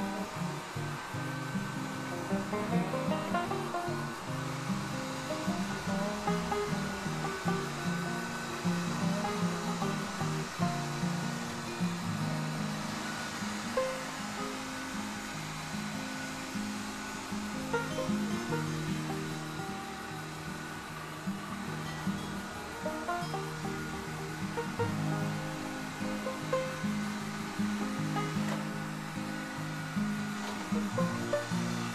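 Background music, a melody of short plucked notes, plays throughout. Beneath it runs a steady whirring hiss from the robot vacuum cleaner working.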